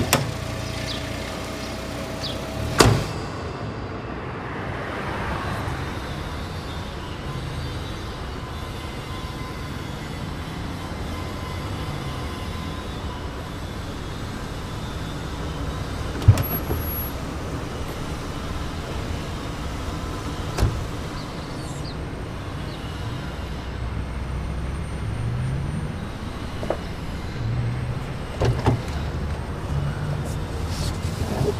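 A car door shuts with a thud about three seconds in, then a car engine runs with a steady low rumble. Two more sharp door clunks come about halfway through and a few seconds later, with small clicks near the end.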